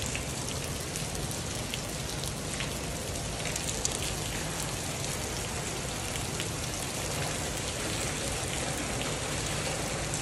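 Water from a burst pipe falling from the ceiling and splashing onto a flooded floor: a steady, rain-like patter with scattered sharper drips.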